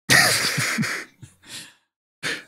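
A man coughing: one breathy burst lasting about a second, then a couple of short, faint huffs.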